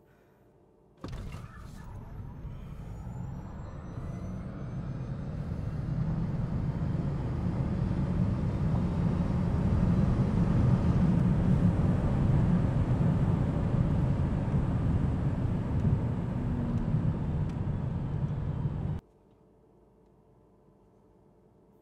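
Inside the cabin of a Tesla Model S Plaid on a hard drag-strip pass: about a second in, a deep rumble of road and wind noise starts suddenly, with a faint rising electric-motor whine above it. The noise grows louder for several seconds as speed builds, holds steady, then cuts off abruptly near the end.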